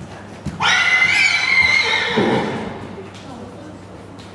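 A horse whinnying: one loud, high call of about a second and a half, starting about half a second in and dropping into a lower, shaky tail at its end.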